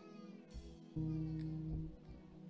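Soft background keyboard music under the service. A high, wavering pitched sound glides in the first second, then a low note is held steady for most of the second half.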